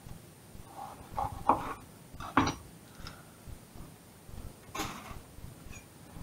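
Kitchen knife slicing a red bell pepper on a wooden chopping board: a few separate sharp knocks of the blade against the board, the loudest near the end.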